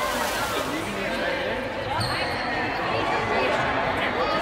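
Indistinct voices of a group of people talking in a large gymnasium, echoing off the hard floor and walls. There is an abrupt change about halfway through.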